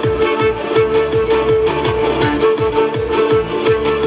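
Andean music played on zampoña panpipes over a backing track, with a steady drum beat under a held melodic note.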